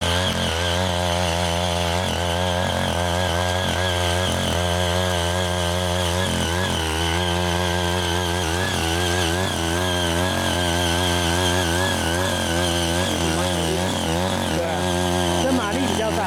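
Small petrol engine of a CY80 mini power tiller running steadily while its rotary tines till the soil, its pitch wavering up and down as the load changes.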